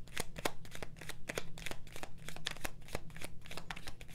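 A deck of tarot cards being shuffled in the hands: a rapid, uneven run of crisp card clicks.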